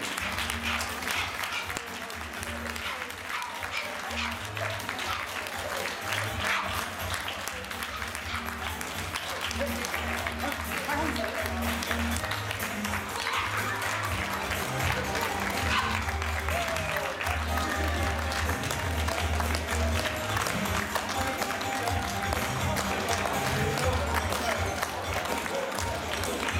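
An audience applauding steadily for dogs and handlers circling the show ring, over background music with a bass line, and some voices.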